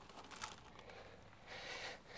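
Faint rustling of arborvitae foliage and soil as the shrub is lowered into its planting hole, a little louder near the end.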